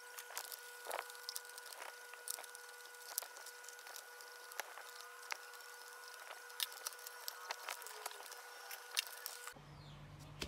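Scattered sharp clicks and taps of a plastic toy shell and its screws being handled as the battery-powered toy elephant is opened up, over a faint steady high hum.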